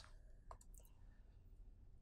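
Near silence: room tone in a pause between narration, with a few faint clicks about half a second in.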